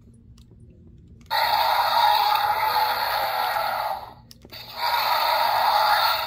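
Battle Chompin' Carnotaurus action figure's built-in electronic sound module playing two dinosaur roars through its small belly speaker. The first starts about a second in and runs nearly three seconds, the second follows after a short gap near the end. Both sound thin, with no low end.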